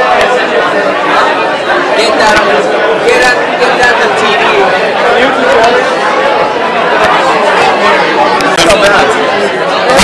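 Many people talking at once in a crowded bar: loud, steady overlapping chatter with no single voice standing out.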